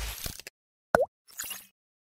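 Sound effects for an animated logo: a whoosh fading out in the first half-second, then a short, sharp pop about a second in, with a quick dip and rise in pitch, followed by a brief high sparkle.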